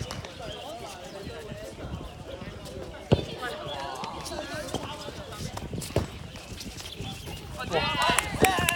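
Two sharp smacks of a dodgeball striking, about three seconds apart, the first the loudest sound here, over constant players' voices and shouts that grow louder near the end.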